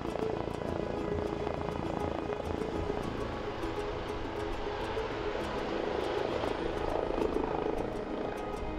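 Eurocopter EC135 trauma helicopter, its rotor and turbine engines running steadily as it descends and sets down on a rooftop helipad.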